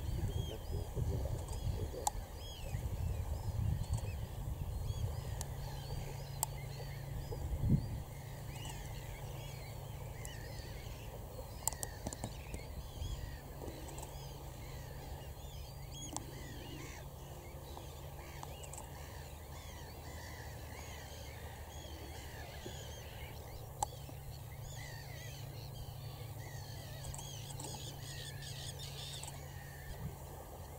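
A flock of waders calling at once: a dense chorus of short, overlapping chirping calls that goes on all through and grows busier near the end. A low rumble with a thump about eight seconds in lies under the first part.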